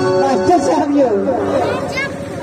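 A performer's voice speaking or half-singing in a rising and falling line, just as the instrumental music stops at the start.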